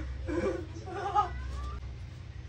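A small child's high-pitched, wordless cries: two short wavering calls, the louder one about a second in.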